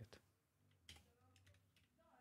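Faint computer keyboard typing: a few scattered keystrokes, otherwise near silence.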